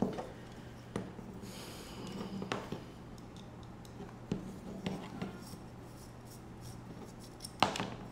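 Scattered light clicks and taps of a carbon-fibre drone frame and a small screw being handled as its arms are folded, over a low steady hum.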